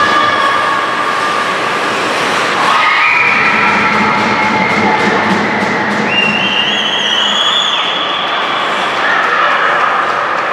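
Indoor ice rink ambience: a steady din from the game and spectators. High held tones step up in pitch from about three seconds in and fade near the end.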